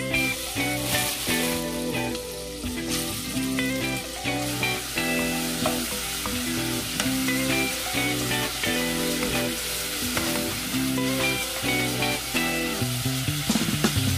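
Beef sizzling as it browns in sesame oil in a pot, stirred now and then with a wooden spoon, under steady background music.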